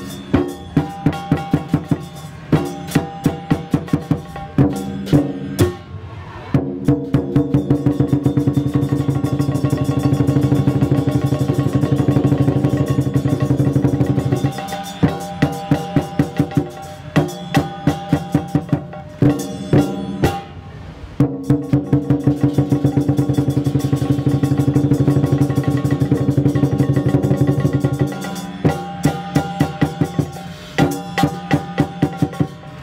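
Lion dance percussion: a big drum with ringing metal percussion, beating out spaced strikes and then breaking into long fast rolls twice, each lasting several seconds.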